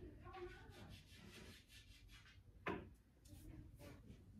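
Very quiet room with a faint voice in the first second and one sharp knock about two and a half seconds in.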